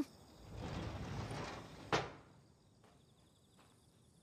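A sliding door rolls along its track for about a second and a half and shuts with one sharp knock about two seconds in, followed by a few faint ticks. It is a faint anime sound effect.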